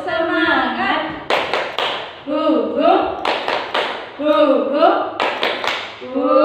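Two women singing a children's action song, with three quick hand claps at a time, three times over.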